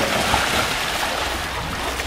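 A hippopotamus mother and calf playing in a pool, their bodies splashing and churning the water in a continuous rush.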